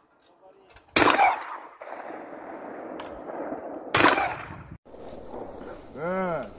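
Two shotgun shots at a flying clay target, about three seconds apart, each a sharp loud crack followed by a long rolling tail.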